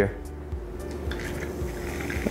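Ginger beer being poured from a bottle into a copper mug over ice: a faint fizzing pour that begins about halfway through.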